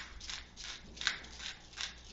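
Hand-twisted pepper mill grinding peppercorns fresh, a series of short crackling grinds about two or three a second.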